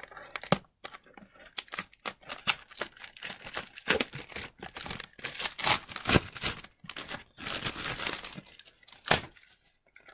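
Plastic shrink-wrap being torn and crinkled off a cardboard trading-card box, an irregular run of crackling rustles and tears.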